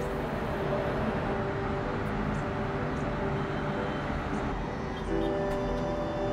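A steady rushing rumble under soft background music, easing about five seconds in.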